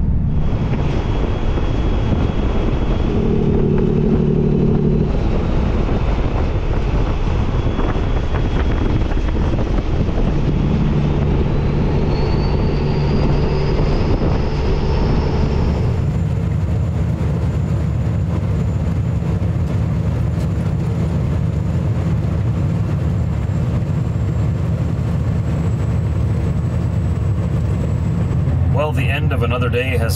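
Semi-truck diesel engine and road noise heard from inside the cab while cruising on a highway: a steady, loud drone. The sound changes character abruptly about halfway through.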